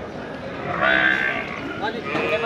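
Indistinct voices of people talking, louder about a second in.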